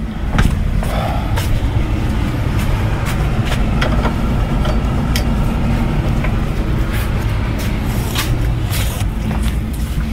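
A steady low mechanical rumble with scattered light clicks and knocks.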